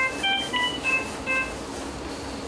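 A quick run of about five short electronic alarm beeps at changing pitches from intensive-care medical equipment, over the first second and a half.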